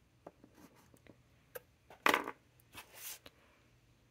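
Metal and glass dip pens being set down on a tabletop: scattered light clicks and taps, with a short, louder rustle about two seconds in and a fainter one about a second later.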